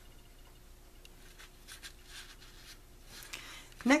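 Faint rustling and light scratchy taps of a cardstock album base being handled and set down on a cutting mat, in a series of short soft strokes.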